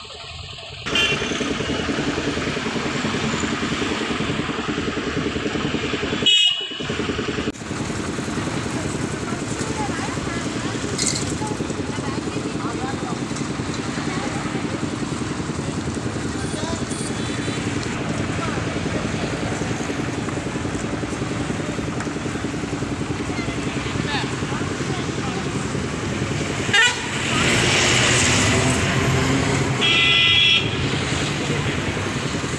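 Roadside traffic running steadily, with motorcycle and vehicle engines going past and a few short horn toots. The loudest come about six seconds in and near the end.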